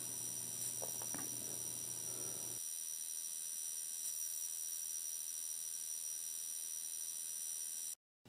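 Steady background hiss with several faint high-pitched electronic whine tones. A low hum underneath drops out about two and a half seconds in. No distinct event stands out.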